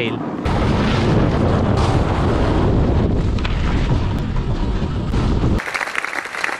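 Wind buffeting the microphone of a snowboarder's action camera as he rides, a loud rumbling rush. Near the end it cuts off suddenly into a burst of applause.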